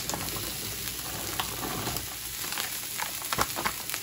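Chum salmon fillets frying in hot oil in a cast-iron pan: a steady sizzle with scattered crackling, and a few sharper clicks a little after three seconds in.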